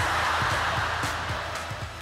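Studio audience laughing, fading gradually, over a background music bed.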